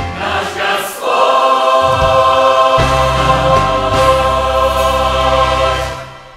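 Mixed youth church choir singing the close of a Russian hymn: a brief moving passage, then a long held final chord over a steady low accompaniment, cut off sharply near the end.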